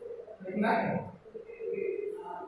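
A man's voice, brief and indistinct, about half a second in.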